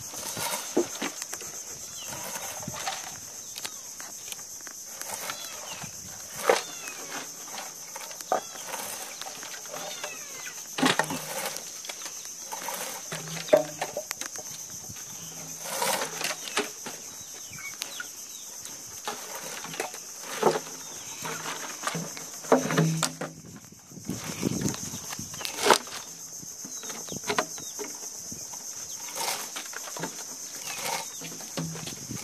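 Seaweed being stripped off a cultivation rope pulled through a small hole in a wooden post: irregular rustling and tearing strokes as clumps rip off and fall, some much louder than the rest. A steady high hiss runs underneath throughout.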